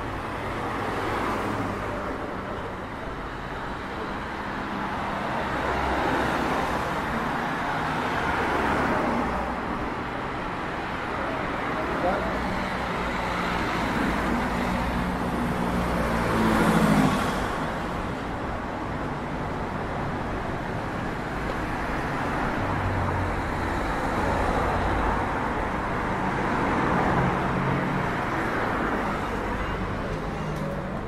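City street traffic: cars driving past one after another, each pass swelling and fading, the loudest about 17 seconds in.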